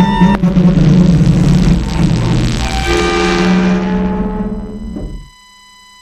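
Logo ident sound design: a deep rumbling boom under a swelling wash of noise and held tones, dying away about five seconds in to a low hush.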